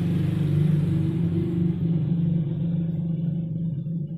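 A steady low mechanical hum, like an engine running, with a few held low tones; it eases slightly in the last second.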